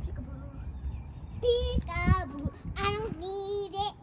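A young girl's voice singing two drawn-out phrases, the first about one and a half seconds in and the second held on a steady note near the end.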